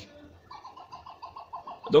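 A bird calling: a fast run of short, evenly repeated notes, about seven a second, lasting over a second.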